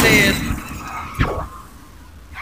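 Vinyl scratching on a Technics SL-1200MK2 turntable: a vocal sample saying "cut" is scratched once at the start, its pitch sliding up and down. It then dies away, with one short scratch about a second in.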